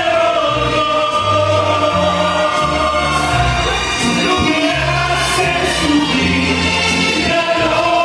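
A man singing live into a microphone over backing music, holding long notes with vibrato above a stepping bass line.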